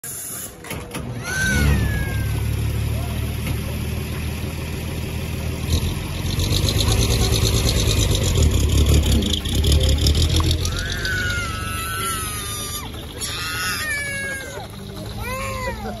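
Miniature steam traction engine pulling away, with steam hiss and quick, regular exhaust beats over a low rumble. Near the end a small child cries in rising and falling wails.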